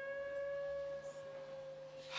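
A single held tone, steady in pitch with a few overtones, fading slowly over about two seconds above a faint low hum.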